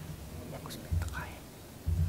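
Hushed, whispered speech close to a lectern microphone, with low bumps about a second in and near the end.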